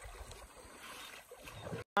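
Faint water sounds of kayak paddling: paddles dipping and water lapping against the plastic hulls. It cuts off abruptly just before the end.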